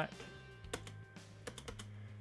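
Computer keyboard keystrokes: one click a little before halfway, then a quick run of several clicks in the second half.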